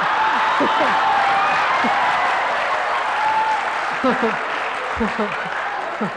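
An audience clapping, with a woman laughing over it. The clapping thins out near the end.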